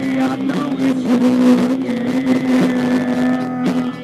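A live rock band playing an instrumental passage: distorted electric guitar holding one long low note that stops near the end, with drums hitting steadily underneath.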